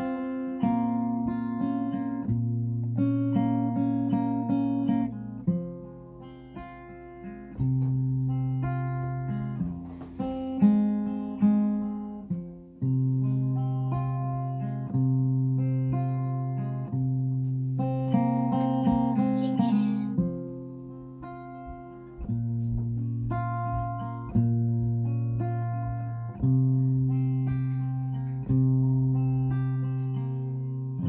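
Solo steel-string acoustic guitar playing a slow-rock intro: picked chords over a bass line, the chord moving every two to three seconds.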